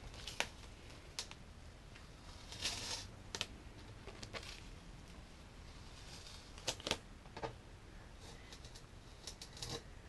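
Masking tape coated with a layer of epoxy hot coat, still slightly pliable, being peeled off a surfboard's rail and handled: faint scattered crackles and sharp clicks, with a short rustle about three seconds in.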